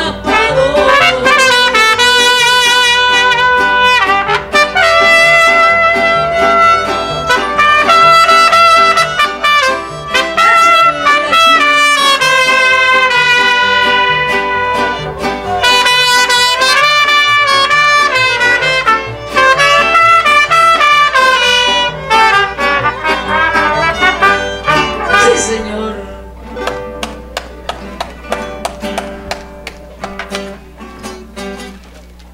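A mariachi group's two trumpets play a loud melody in long held notes over accordion and band backing. About 26 seconds in the trumpets stop and the music goes on more quietly with plucked strings.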